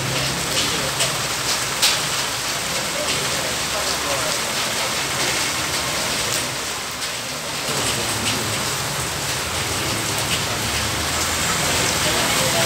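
Steady rain falling on a wet paved street, with a few sharp drip splashes in the first couple of seconds.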